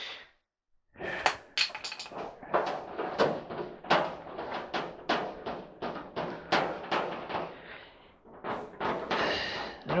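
Irregular clicks, knocks and scrapes of metal parts rattling inside a clothes dryer's sheet-metal cabinet as a screw is worked by hand toward a hole it won't line up with. The knocks begin about a second in and run in a dense, uneven string.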